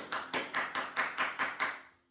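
Hand clapping in quick, even claps, about five a second, dying away near the end.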